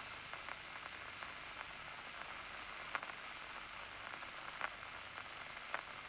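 Faint steady hiss of an old film soundtrack, with three faint clicks in the second half.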